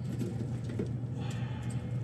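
Steady low hum from the refrigerated display case's equipment, with faint rustling and handling of electrical cords.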